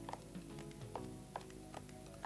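Kitchen scissors snipping parsley packed in a drinking glass: faint repeated snips, about two a second, over quiet background music.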